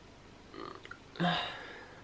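A tearful woman's crying sounds. A quiet breath with small mouth clicks comes about half a second in, then a louder, short voiced sob from her throat that fades away.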